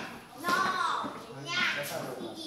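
Children's voices calling out over background chatter, with two loud, high-pitched calls about half a second and a second and a half in.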